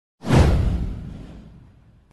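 Whoosh sound effect with a deep low boom, starting suddenly about a quarter second in, then sweeping down in pitch and fading out over about a second and a half.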